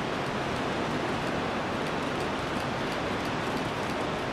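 A steady, even rushing noise of outdoor background at a moderate level, with no voices.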